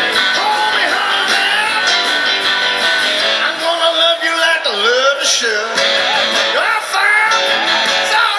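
Live band music with a prominent guitar line, its notes bending and sliding.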